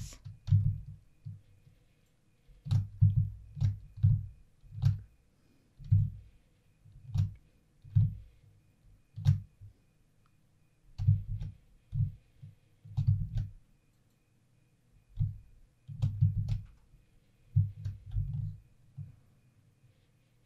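Computer mouse clicks and keyboard key presses, irregular, each with a dull thump, coming about once a second with a couple of short pauses.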